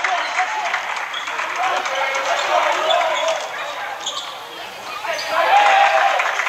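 Basketball being dribbled on a hardwood gym floor, with indistinct spectators' voices echoing through the gym; the voices grow louder about five seconds in.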